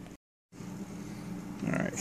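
A steady low background hum, cut off by a brief gap of dead silence about a fifth of a second in, then resuming. A man starts speaking near the end.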